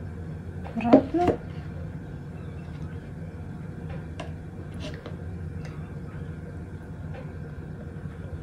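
Quiet hand-handling of soap: a few light clicks and taps as soap roses are pressed into a soap planter, over a steady low hum. A short voiced murmur comes about a second in.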